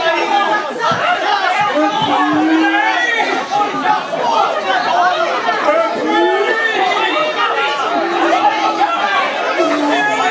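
Many voices talking over one another at once, loud and continuous, like a group of actors all speaking together.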